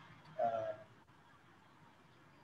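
A man's brief hesitant "uh" in mid-sentence, about half a second in, then faint room tone over a video-call line.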